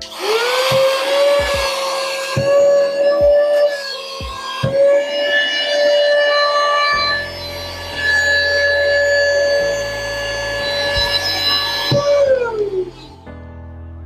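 Cordless handheld mini car vacuum switched on, its motor whining up quickly to a steady high pitch. It runs while sucking cookie crumbs off a sheet of paper with the nozzle removed, with a few clicks in the first five seconds. The pitch winds down when it is switched off about twelve seconds in.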